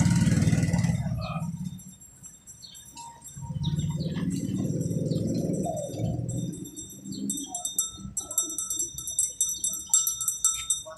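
Low engine rumble of street traffic, rising twice as vehicles pass, then a fast, rhythmic high jingling in the last two seconds.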